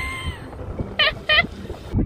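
A person laughing, with two quick high bursts of laughter about a second in, over a steady low rumble.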